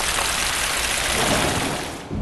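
Rain-like hissing sound effect on an animated water-drop ident: a dense, even rush of noise that fades toward the end.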